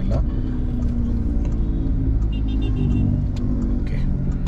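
A pickup truck's diesel engine and road rumble heard from inside the cabin while driving: a steady low drone with an even engine hum and no revving.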